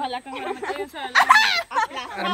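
Excited human voices: brief talk and laughter from a group of people, with a loud, high-pitched exclamation about a second in.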